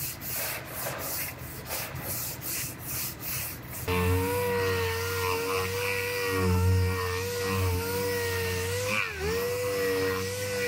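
Hand sanding of a car's quarter panel with a sanding block, in back-and-forth strokes about twice a second. About four seconds in this gives way to a dual-action orbital sander running steadily with a whine, its pitch dipping briefly near the end as it is pressed onto the panel.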